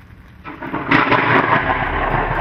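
Thunder from a close lightning strike: after a quiet start it builds about half a second in, breaks into a loud crack about a second in, then keeps rumbling, with rain underneath.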